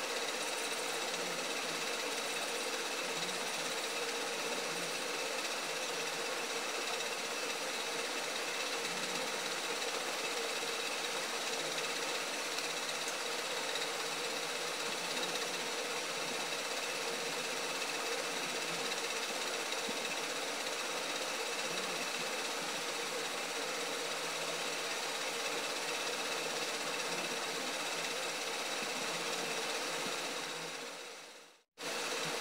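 A steady mechanical whir with a hiss and a few faint constant tones, running evenly without a break.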